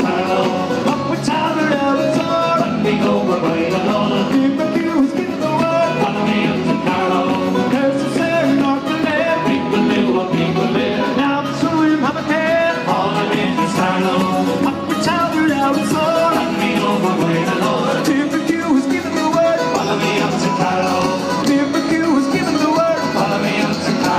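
Live band playing an Irish-style tune through the stage PA, with acoustic guitars, bass guitar and drums.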